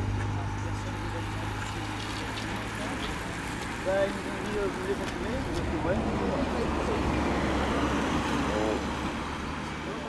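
Race-convoy cars following a cycling bunch pass along the road, engines and tyres on tarmac. A steady low engine hum fades over the first few seconds, and road noise swells again in the second half as more cars go by.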